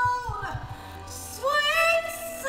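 High female voice singing a held straight note that fades about half a second in, then sliding up into a new held note near the end.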